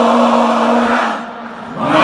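Large crowd singing together in unison: one long held note, a brief drop in level, then the next, lower note begins near the end.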